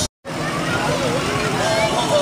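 Parade street sound: people's voices over a pickup truck driving slowly past. The audio drops out completely for an instant just after the start.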